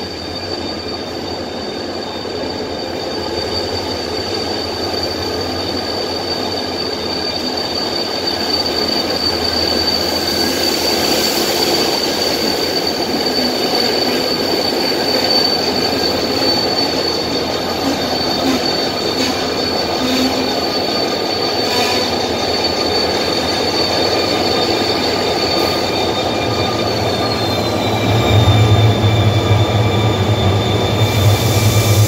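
Saemaeul-ho passenger cars rolling past at a station platform, with a steady high-pitched wheel squeal that dips slightly in pitch near the end. Close to the end, a deep rumble comes in as the Korail 7400-class diesel-electric locomotive passes close by.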